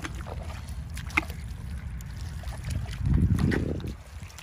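Wind buffeting the microphone, a steady low rumble that swells into a stronger gust about three seconds in, with a few faint light clicks and ticks from the shallow muddy water around it.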